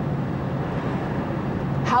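Steady low rumble and road noise of a car's cabin on the move.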